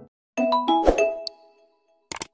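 Subscribe-button animation sound effect: a short chime that steps up in pitch, a sharp click just under a second in, then a ringing tone that fades away.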